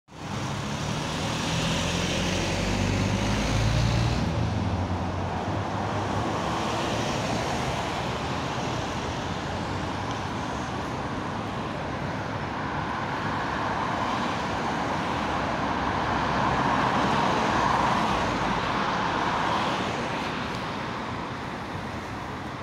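Road traffic under a concrete overpass: a diesel engine idles close by for the first four seconds, then steady traffic noise as a Mercedes-Benz Citaro city bus drives up the kerb lane, growing louder a few seconds before the end and easing off as it nears the stop.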